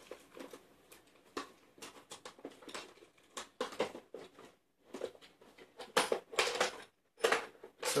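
Rummaging: small hard objects clicking, tapping and rustling as they are moved about in a search. The taps are irregular and soft, with a few louder knocks in the last couple of seconds.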